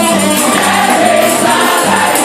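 Gospel choir of women singing a praise song into microphones over backing music, with a tambourine jingling steadily in rhythm.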